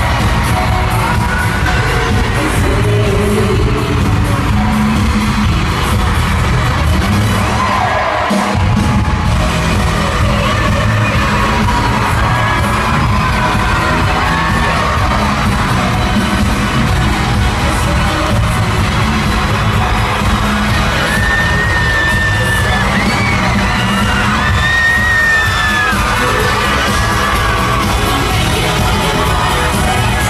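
Live pop song played loud over an arena sound system, with a female lead vocal and a crowd cheering over it. The bass cuts out for a moment about eight seconds in.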